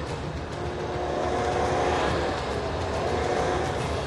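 Toyota Land Cruiser 300 engine revving under load with its wheels spinning in packed snow, the SUV stuck in place and not moving forward. The revs rise gently to a peak about two seconds in, then ease off.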